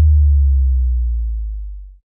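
A single deep bass note left ringing after the DJ mix's music cuts off, fading steadily until it dies away.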